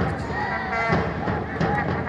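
Speech: a match commentator's voice, with music underneath.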